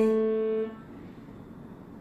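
A held note on an upright piano rings on and then stops abruptly about two-thirds of a second in as the keys are released, followed by quiet room tone.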